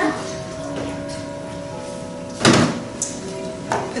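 Filtered water poured from a plastic pitcher into a blender jar of fruit. About two and a half seconds in there is a loud knock as the pitcher is set down on the counter, and a smaller knock follows near the end.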